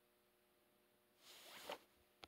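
A short rasp rising in pitch for about half a second, about a second and a quarter in, ending in a sharp click, over a faint steady electrical hum.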